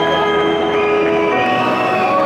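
Live band music: soft, sustained chords held steadily, with a few notes changing partway through.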